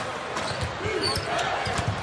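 Basketball being dribbled on a hardwood court, short irregular knocks over the steady murmur of an arena crowd.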